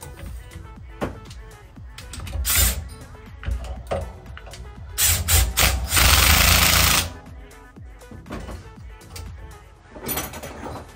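Cordless drill driving the spring-compressor tool to compress a motorcycle fork spring: a brief burst about two and a half seconds in, then a few short bursts and one longer run of about a second that stops near seven seconds.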